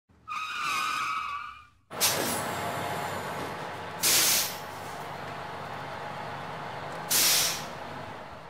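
Intro sound effects of a large bus: a wavering high tone, then a steady engine-and-air noise with two sharp air-brake hisses about three seconds apart.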